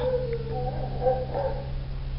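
A faint, high-pitched animal whine wavering up and down in pitch for about a second and a half, over a steady low hum.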